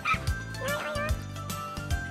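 Upbeat channel-ident jingle: a steady bass beat with a wavering, sliding cartoon-like lead melody over it.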